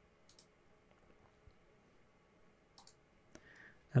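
A few faint clicks of a computer mouse and keyboard, spaced irregularly, over quiet room tone.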